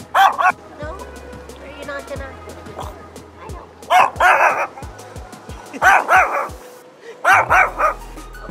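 A Chihuahua barking in high-pitched yaps, four quick bursts of two to four yaps each: one at the start, then, after a pause of a few seconds, three more about every two seconds.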